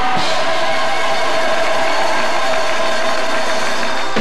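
A gospel choir holding a long sustained chord over a dense wash of congregation noise.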